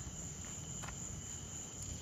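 Crickets chirping in a steady high trill, with one faint click a little under halfway through.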